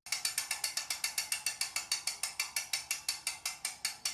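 A ratchet clicking steadily and quickly, about seven or eight even clicks a second.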